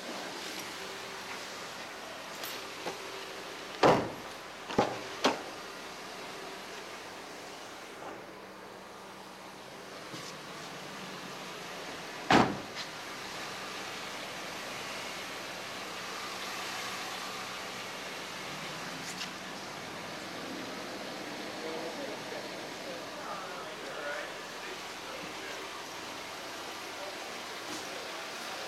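Steady showroom background noise with a few sharp knocks around four to five seconds in and one loud single thump about twelve seconds in, fitting a Nissan Versa's car door being shut as the camera leaves the cabin.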